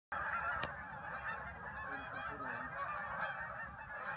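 A large flock of Canada geese honking in flight overhead, many calls overlapping in a continuous chorus, with one brief click about half a second in.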